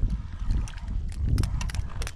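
Low rumble of wind buffeting the microphone, with a scattered run of light clicks and taps while a fish is being reeled in on a spinning rod from a kayak.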